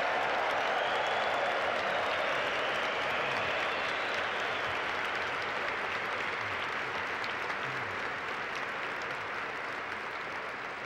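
An audience applauding steadily, the clapping slowly tapering off toward the end.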